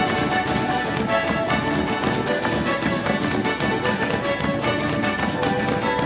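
Malambo zapateo: a fast, even stream of boot heel and toe strikes on a wooden stage, played over live folk music with sustained pitched notes.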